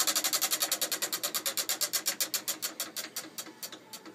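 Spinning prize wheel, its pointer clicking over the pegs on the rim: the clicks come rapidly at first, then slow and fade as the wheel coasts to a stop near the end.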